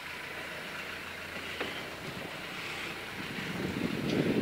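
Nissan Patrol SUV driving along a dirt road: a steady low engine hum under wind rushing over the microphone, with the rumble growing louder near the end.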